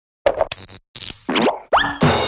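Animated logo intro sting made of quick cartoon sound effects: a few short pops and hissy bursts, then rising pitch glides, ending in a bright ringing chime that begins right at the end.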